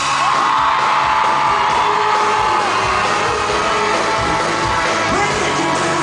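Loud live pop band music with a steady beat, recorded from the audience in a concert hall; a long held high note wavers over it and fades after about two and a half seconds.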